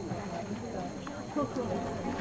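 Indistinct background voices of people talking, faint and steady, with no single loud event.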